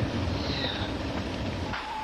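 Low, steady drone of a vehicle's engine running, which drops away sharply near the end. As it stops, a single steady high tone begins.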